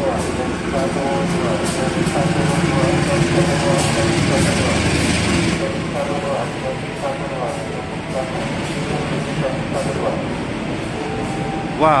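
Long-distance passenger train, a diesel locomotive hauling stainless-steel coaches, pulling slowly into the platform: steady engine and wheel noise that eases after about five and a half seconds as the coaches roll by, with faint voices in the background.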